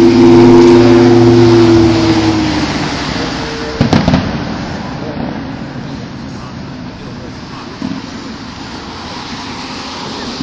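A loud, steady pitched tone with several pitches that fades out over the first two to three seconds. A single sharp firework bang follows about four seconds in, with a fainter thud near eight seconds, over a steady outdoor hiss.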